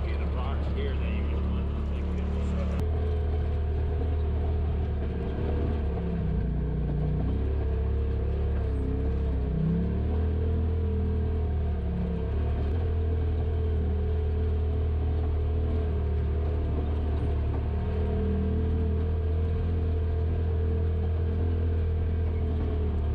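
Polaris RZR Pro XP side-by-side's twin-cylinder engine running as a steady low drone while it crawls over a rocky dirt trail, with a few brief changes in pitch as the throttle varies.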